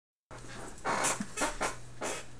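A person sniffing several times in short, breathy bursts over a low, steady hum.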